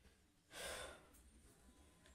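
Near silence, with one short, soft breath or sigh a little over half a second in.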